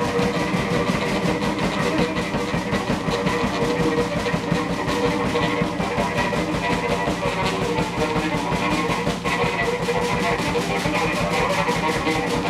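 Free-improvised ensemble music: drum kit, electric guitar and bowed cello and violin all playing at once in a loud, dense, unbroken texture over a fast, steady drum pulse.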